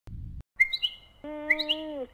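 A short low rumble at the very start, then a small bird chirping in quick rising chirps with sharp clicks. A little past a second in, a steady held tone with overtones joins under the chirps.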